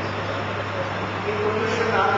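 A voice speaking over a steady low electrical hum and a constant hiss of background noise; the speech drops out for the first second or so and comes back near the end.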